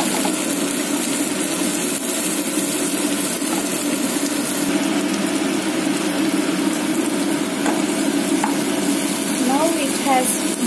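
Sliced bell peppers and onion sizzling in hot oil in a nonstick wok while a wooden spatula stirs and scrapes them, over a steady low hum.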